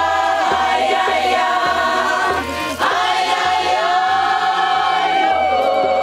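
Choral music: several voices holding long notes with vibrato over a steady low beat, with a brief break between phrases about two and a half seconds in.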